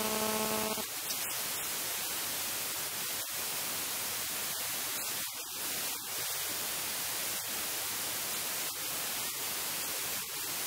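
Steady static hiss, broken by small brief dropouts, in place of any speech. A held musical chord cuts off just under a second in.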